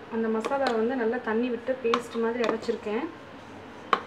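A woman speaking, with a single sharp click near the end.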